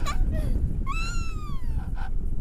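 A child's high-pitched squeal of delight, about a second long and falling in pitch, with a shorter squeal just before it. A steady low rumble of wind on the microphone runs underneath.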